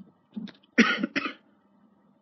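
A person coughing: two short coughs close together about a second in.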